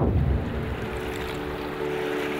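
Rushing, wind-like noise that starts suddenly with a low rumble and then settles into an even hiss, with held musical notes coming in under it about a second in.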